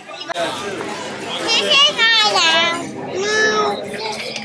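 Young child squealing in a high, wavering voice, twice, over restaurant chatter.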